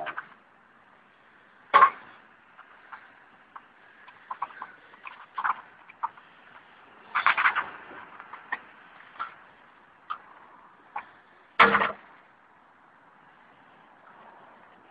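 A hand tool clicking, scraping and knocking against metal and plastic scrap parts as they are worked apart. There are scattered light clicks throughout and three louder knocks: about two seconds in, around the middle, and near the end.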